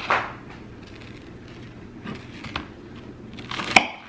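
Knife scraping over buttered toast, a few light scrapes, then a louder crunch with a sharp click near the end as a knife cuts through the crisp toast on a plastic cutting board.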